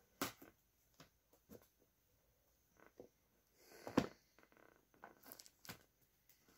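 Cardboard laptop box being handled and opened by hand: faint scattered clicks, scrapes and rustles of cardboard and packing, with a sharper knock about four seconds in.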